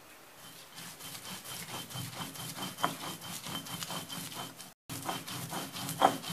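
Stone roller grinding roasted spices on a granite grinding slab (Sri Lankan miris gala): rapid back-and-forth scraping strokes, several a second, of stone rubbing on stone through the gritty masala. The sound cuts out briefly a little before five seconds in.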